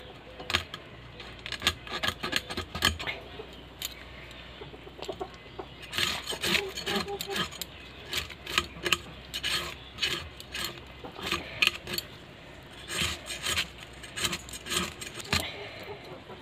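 Tilapia being scraped against the iron edge of a boti to remove its scales: a run of short rasping scrapes, coming in quick bursts with brief pauses.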